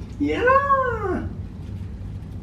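A single drawn-out meow-like call, rising and then falling in pitch, about a second long.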